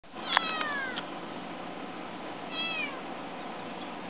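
Bengal kitten meowing twice: a loud call about half a second in, then a shorter one a little before the three-second mark, each falling in pitch.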